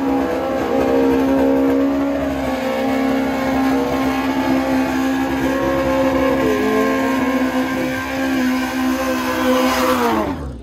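Drag-racing sport bike engine held at high, steady revs during a tyre burnout at the start line, with the revs dropping off sharply at the end.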